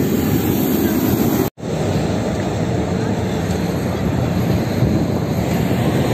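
Steady airport-apron noise beside parked airliners, a dense low rumble of aircraft engines mixed with wind on the microphone. It cuts off abruptly about a second and a half in and resumes at once, with a faint high whine running through the later part.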